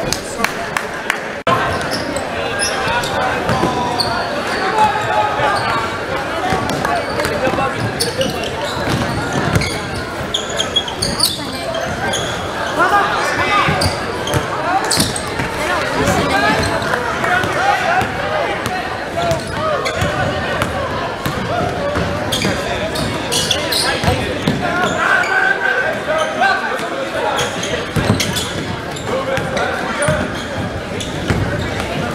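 Basketball game sound in a gymnasium: a basketball being dribbled on the hardwood court, with a steady babble of crowd and player voices echoing in the hall.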